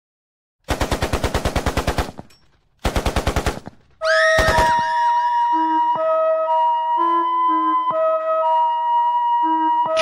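Two short bursts of rapid automatic gunfire, used as a sound effect, each lasting about a second. Then a flute-like synth melody over a bass line comes in at about four seconds as the beat starts.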